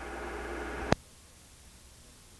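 Steady low electrical hum and hiss with faint steady tones, ended by a single sharp click just before a second in; after the click only a faint hiss remains.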